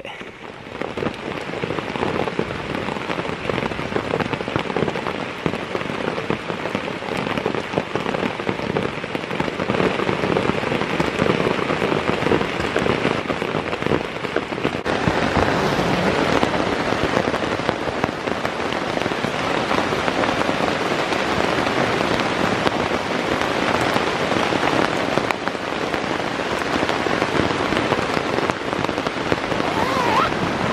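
Rain pattering on a tent, heard from inside as a dense, continuous drumming of drops that grows heavier about halfway through.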